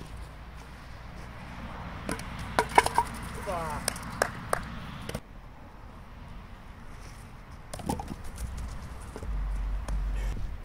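Thrown wooden kyykkä bats landing on asphalt and knocking into the small wooden kyykkä pins: a quick run of sharp wooden clacks and clatters about two to three seconds in, with a couple more knocks a second later.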